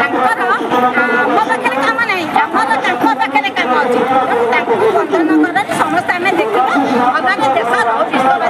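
A woman speaking loudly and animatedly, with crowd chatter behind her.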